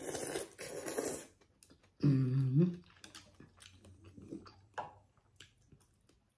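Khao piak sen noodles slurped off chopsticks in two quick, hissing sucks. A short hummed 'mm' of enjoyment follows about two seconds in, then soft chewing and small clicks as she eats.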